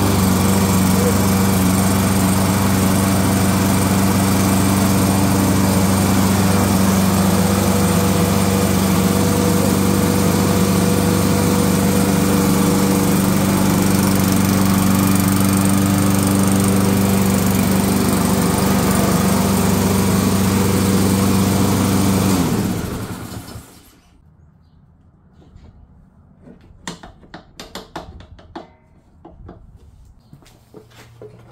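Brand-new Benchmark 200 cc self-priming lawn mower engine, electric-started with no choke, running loud and steady at one speed. About 22 seconds in it is switched off and winds down over about a second, followed by a few light clicks and knocks.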